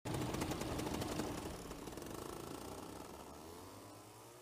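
Paramotor engine running in flight with a rapid rattling beat, fading out gradually.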